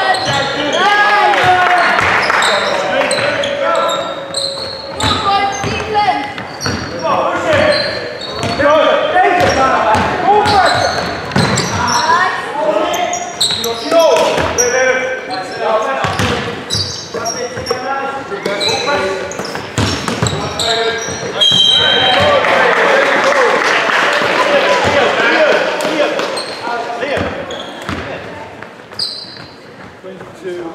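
Basketball game in an echoing sports hall: the ball bouncing on the wooden floor during play, short high shoe squeaks, and players' voices calling out across the court.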